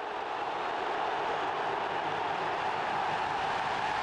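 Steady noise of a large stadium crowd in the stands, a dense wash of many voices with no single call standing out.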